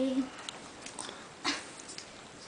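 The end of a boy's held sung note, then a pause in the singing with a short, sharp intake of breath about halfway through.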